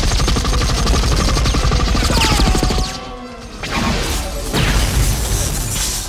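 Film sound effects of rapid automatic gunfire from a mounted gun. It comes in two long bursts with a short break about three seconds in, and there are whining glides during the first burst.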